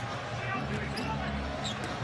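Basketball arena game sound: a ball bouncing on the hardwood court over a steady crowd murmur.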